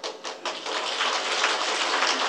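Audience applauding: a few scattered claps at first, filling in to steady clapping about half a second in.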